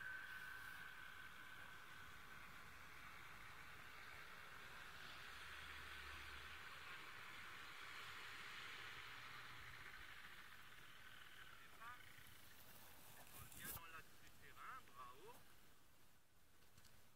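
Faint, distant drone of a paramotor's engine in flight, slowly fading away. Near the end come a few brief high chirps.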